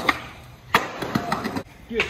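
A skateboard hits concrete with one sharp clack a little under a second in, followed by a few lighter knocks of the board and wheels.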